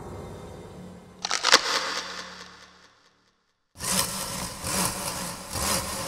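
Film soundtrack sound effects: a few sharp cracks over a low hum about a second in, fading out to complete silence. Then a sudden burst of dense crackling, rustling noise begins.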